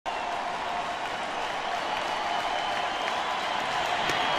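Ballpark crowd cheering and clapping, a steady noise that grows slightly louder during the pitcher's delivery.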